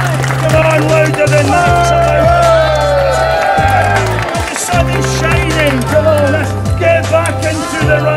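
Background music: held bass notes that shift in pitch every second or two, with a gliding melody line above them.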